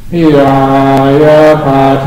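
Buddhist chanting in Pali, voices reciting together in unison on a low, nearly level pitch, picking up again right after a brief pause for breath.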